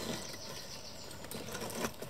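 Baby pine marten eating from a plate: a quick, even run of small wet chewing and smacking clicks, with a louder click near the end.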